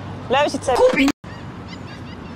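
A man's voice making two hooting, honk-like calls that rise and fall in pitch, an imitation of birds, broken off abruptly just after a second in.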